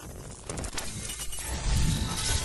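Sound-design effects for an animated intro: a dense crackling, shattering noise that builds in loudness, with a deep boom about three-quarters of the way through.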